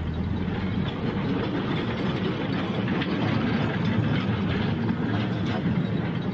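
Steel-wheeled mine ore cart rolling along narrow rails as miners push it, a steady rattling rumble of wheels on track.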